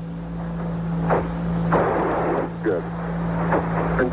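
Archival Apollo 11 lunar-module descent radio transmission: a steady hum and static hiss under clipped, sparse callouts, with a short rush of radio noise about two seconds in.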